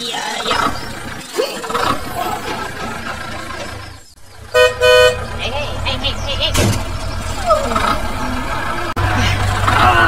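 Two short toots of a horn in quick succession, about four and a half seconds in, the loudest sounds here, over voices and a low steady hum.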